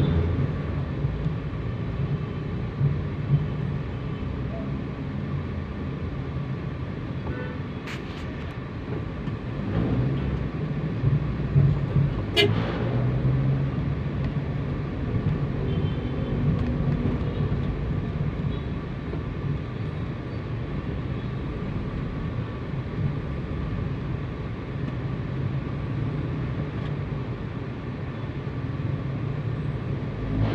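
Street traffic heard while riding through a busy city street: a steady low engine hum with road noise. Two sharp clicks come about eight and twelve seconds in.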